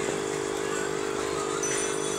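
Aquarium air pump humming steadily, driving a stream of air bubbles through the tank.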